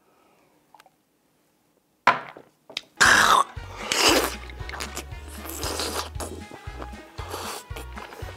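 Near silence for two seconds, then background music with a steady low beat comes in. Over it come loud slurping bursts about three and four seconds in as a raw oyster is sucked off its half shell, followed by chewing.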